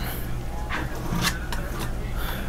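Palette knife dragging paint across a stretched canvas in a few short scrapes, over a steady low electrical hum.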